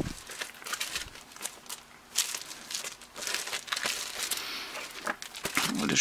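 Clear plastic sheet protectors with paper game manuals inside, crinkling and rustling in irregular bursts as they are handled and shuffled.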